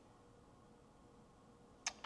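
Near silence: quiet room tone with a faint steady hum, and one short sharp click just before the end.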